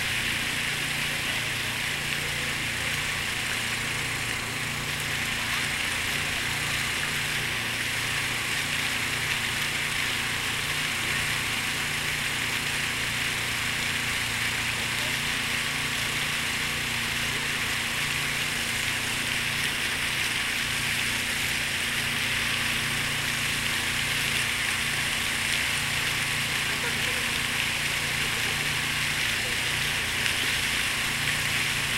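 Large fountain's water jets splashing steadily into the basin as an even hiss, over a low steady hum.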